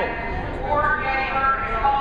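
Several people's voices overlapping in a large echoing hall: spectators talking and calling out, with no clear words.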